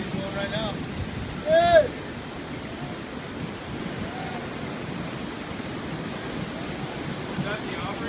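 Ocean surf breaking and washing over a rock jetty, a steady rushing wash. About a second and a half in comes one brief, loud shouted call from a person.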